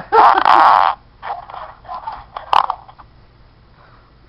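A man laughing: one loud burst of laughter in the first second, then several shorter breaks of laughter dying away by about three seconds in.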